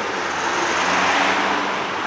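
A motor vehicle passing close by on the street: a steady rush of tyre and engine noise that swells a little and eases off near the end.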